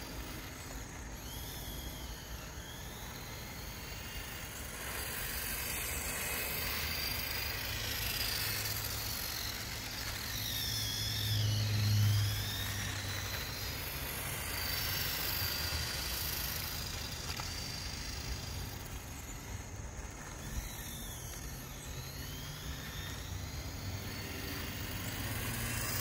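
Small brushed electric motor of a 1/8-scale Tyco RC go-kart whining as it drives, the high whine repeatedly rising and falling in pitch as it speeds up and slows. The sound is loudest about halfway through.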